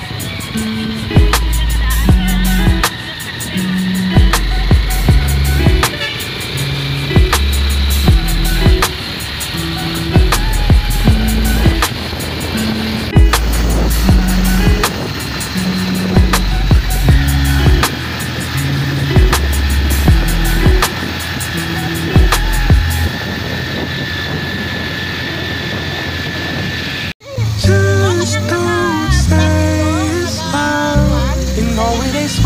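Background music with a steady beat and a stepping bass line. It cuts out abruptly near the end, and a different song with singing starts.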